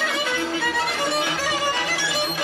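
Bulgarian folk instrumental ensemble playing live, led by fiddles, with accordion, winds, double bass and a large tapan drum keeping a steady beat.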